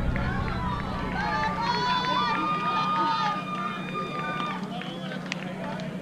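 Distant voices of players and spectators calling out, with one long drawn-out shout starting about a second in, over a steady low hum.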